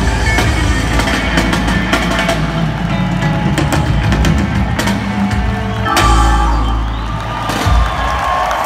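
Live reggae band playing, with a heavy bass line, drum kit and guitar, recorded from the audience seats of a large open venue.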